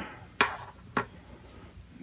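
Two light clicks, the first about half a second in and a fainter one a second in, as a small bone guitar saddle is set down on the guitar's wooden top.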